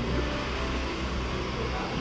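Steady low background hum with an even noise over it.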